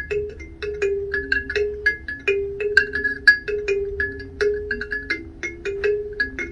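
Kalimba (thumb piano) played solo: a repeating melody of plucked metal tines, each note ringing briefly, about three to four notes a second.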